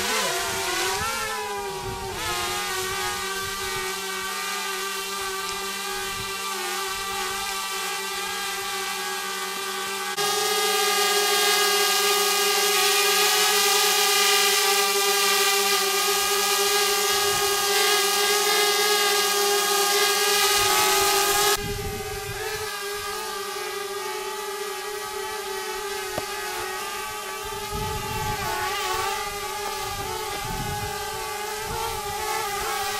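A motor running steadily with a humming stack of even tones. It jumps louder and brighter about ten seconds in, drops back suddenly about ten seconds later, and its pitch wavers near the end.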